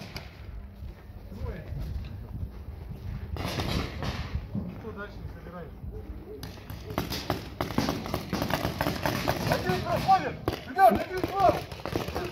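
Paintball markers firing: a quick run of sharp pops and the smack of balls on bunkers starts about halfway through, with players shouting in the distance near the end.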